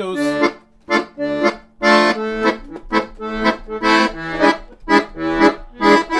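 Weltmeister piano accordion playing a passage of short rhythmic chords, about two a second, on A minor–centred gypsy-jazz changes. The passage demonstrates how the chords under the solos differ from the introduction.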